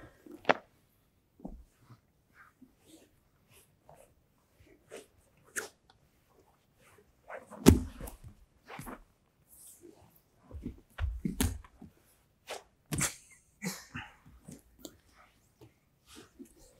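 Two grapplers in gis working a sweep on training mats: fabric rustling and scuffing with scattered short knocks, and dull thuds of bodies landing on the mat, the loudest about eight seconds in and more around eleven and thirteen seconds.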